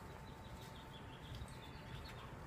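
Quiet outdoor background noise with faint bird chirps.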